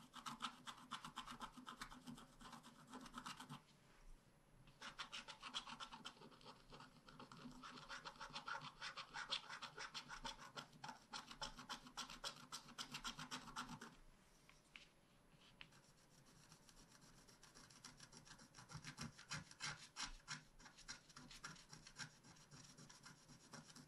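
Faint, quick scratching of a wooden scratch stylus scraping the black coating off a scratch-art sheet, in stretches of many short strokes with a brief pause about four seconds in and a quieter spell after about fourteen seconds.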